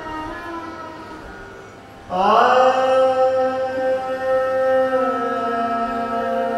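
Carnatic alapana in raga Hindolam, an unmetered melodic improvisation sung by a male voice. A phrase fades out, then about two seconds in a loud long note enters with a short upward slide and is held steady.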